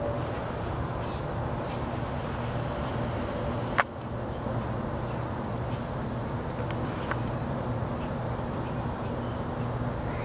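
Steady low background hum of an outdoor yard, with one sharp click about four seconds in.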